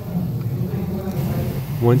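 A steady low mechanical hum, with a man's voice starting near the end.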